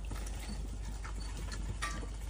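Giant panda eating bamboo: crunching clicks as it bites and chews the stalk, with one louder crack near the end.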